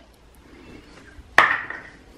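A single sharp tap about a second and a half in, with a short ringing tail, against a quiet room.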